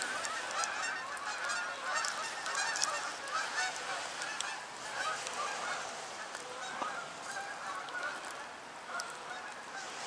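A flock of geese in flight honking, many overlapping calls at once, thinning out in the second half.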